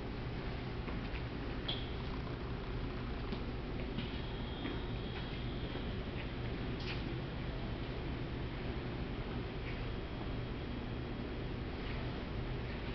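Steady low hum of a large room, with four short, faint, high squeaks spread through it.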